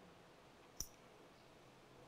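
Near silence in a pause of speech, with one faint short click a little under a second in.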